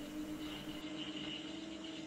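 Small metal lathe running with its chuck spinning: a steady motor hum with a few constant tones, no cutting heard.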